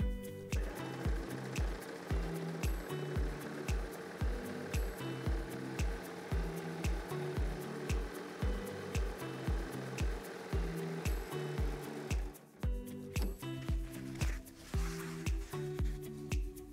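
Background music with a steady beat. Under it, a baby lock desire3 overlock machine (serger) runs, stitching a two-thread wide flatlock seam; the machine noise starts about half a second in and stops suddenly about twelve seconds in.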